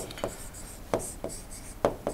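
Digital pen writing on a tablet surface: several sharp taps with light scratching between them as a word is handwritten.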